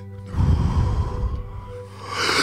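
A man's deep breath out close to the microphone, a wordless rush with a low rumble, starting about a third of a second in, between two breaths in of the deep-breathing cycle. Soft background music with steady held tones runs underneath.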